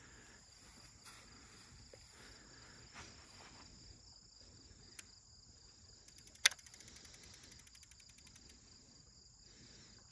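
Steady high chirring of crickets and other night insects, faint and continuous, with a single sharp click about six and a half seconds in.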